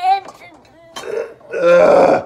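A child's long, loud burp about one and a half seconds in, with the liquid in his stomach audible in it.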